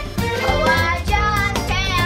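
Children singing a musical-theatre number over a recorded backing track with a steady beat.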